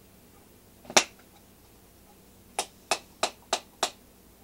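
One loud sharp tap about a second in, then five quick, evenly spaced sharp taps, about three a second, near the end.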